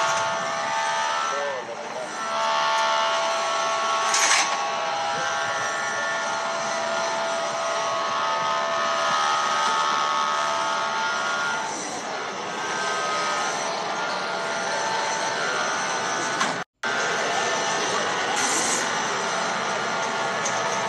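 Indistinct voices over a steady, dense background noise. The audio cuts out completely for a split second a few seconds before the end.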